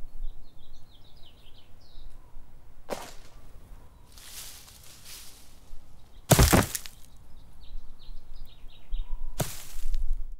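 Small birds chirping in short runs of rapid notes, broken by a sharp knock, a rustle, and then a loud heavy thud about six and a half seconds in: a person falling out of the tree onto the ground. Another knock comes near the end.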